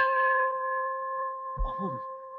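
A bronze ship's bell ringing on after a single strike from a thrown stone, a steady chord of three tones slowly fading.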